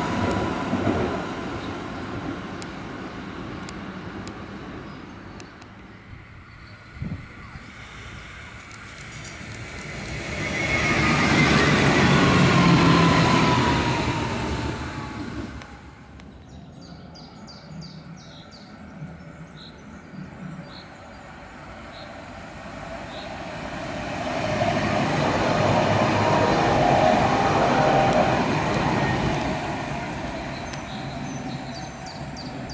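Tatra KT4D articulated trams passing by twice, each pass a swell of wheel-on-rail and running noise. On the first pass a whine falls in pitch as the tram goes by.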